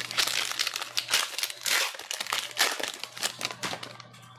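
Silver foil wrapper of a trading-card pack crinkling and tearing as it is pulled open by hand: a dense run of crackles that eases off near the end.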